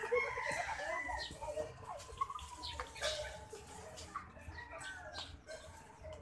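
A rooster crowing, with chicken clucks and a few short clicks. A long, gently falling call comes a second or two in.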